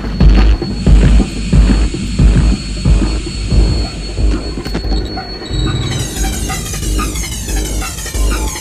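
Electronic dance music with a heavy bass beat about twice a second; a held high tone drops out and a busier, warbling electronic texture takes over about six seconds in.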